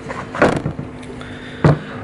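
Two short knocks from a black plastic seedling tray of moss being handled, one about half a second in and a sharper one near the end, over a steady low hum.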